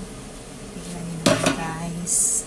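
Kitchen clatter: a sharp metallic clink with a short ring about a second and a quarter in, over a steady low hum.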